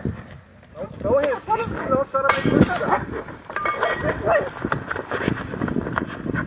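Indistinct raised voices, then the knocks, shuffling and rustle of a scuffle as several officers seize a woman who struggles against them. The voices start about a second in, and the scuffle noises thicken from about two seconds in.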